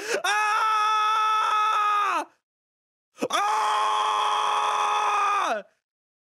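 A man screaming in shock: two long screams held at a steady high pitch, each about two seconds, the pitch dropping as each one ends, with a second's pause between them.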